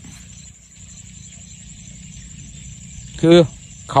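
Insects trilling steadily in a high, thin, fast-pulsing tone, over a low steady rumble. A man's voice comes in briefly near the end.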